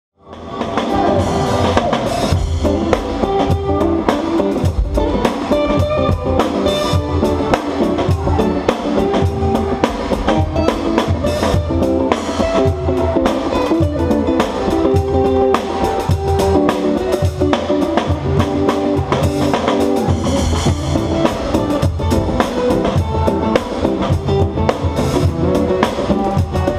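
Live funk jam: an acoustic drum kit with Paiste cymbals playing a steady groove alongside guitar and bass, coming in within the first half second.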